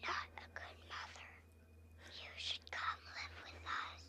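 Whispered voice speaking several short phrases, heard through a small handheld device's speaker, with a steady low electrical hum underneath.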